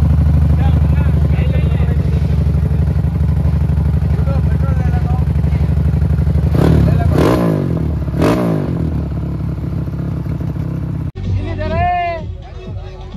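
Dirt bike engine idling steadily, revved briefly twice in the middle, then cut off suddenly near the end.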